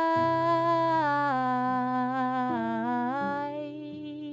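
Female voice singing a long wordless note that steps down in pitch twice and then lifts, over held notes on a classical guitar.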